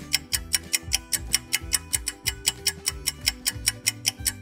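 Ticking background music: a clock-like tick about five or six times a second over a low repeating bass line and a held note. It plays as a countdown-style bed while a letter is being searched for.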